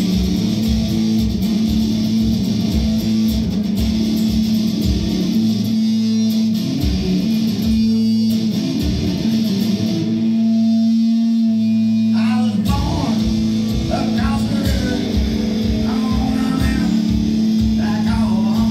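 Live amplified guitar played over a steady low thumping beat kept by a bare foot on a stomp board. About ten seconds in, the beat drops out and the guitar rings on held notes, then the stomping comes back in.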